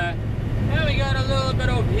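Cummins ISX diesel of a Volvo 780 semi running at highway speed, a steady low drone heard inside the cab. A man starts talking over it about a second in.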